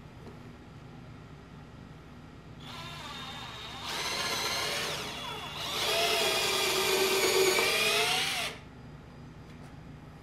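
Cordless drill boring a hole into a wooden beam. The motor whine starts softly, comes on harder in two pushes with its pitch sagging under load, and cuts off sharply near the end.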